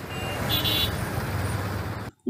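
Road traffic on a congested highway: a steady rumble of truck and car engines and tyres. A short, high-pitched tone sounds about half a second in.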